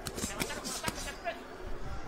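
Four or five sharp smacks of boxing gloves landing in a quick exchange, the loudest two about half a second apart in the first second, picked up by ringside microphones with little crowd noise behind.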